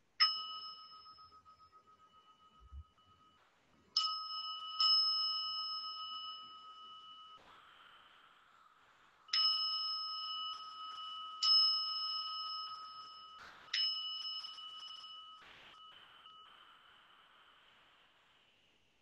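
Small metal singing bowl held in the palm and struck with a mallet six times, a few seconds apart and twice in quick succession; each strike rings with a clear, high, bell-like tone that fades slowly.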